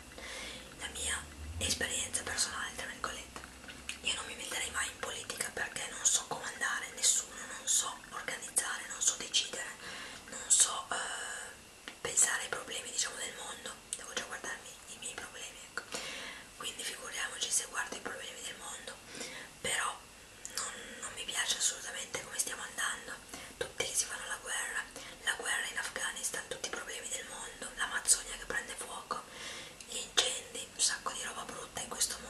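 A woman whispering in Italian, close to the microphone in ASMR style, talking steadily with crisp hissing s-sounds.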